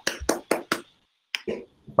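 One person clapping hands, a quick run of claps at about six a second, breaking off around one second in and starting again.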